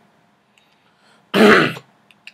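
A man clearing his throat once, a short burst about a second and a half in.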